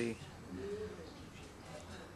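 A man's counting voice trailing off at the start, then a short, soft low vocal murmur about half a second in, over a faint room hum.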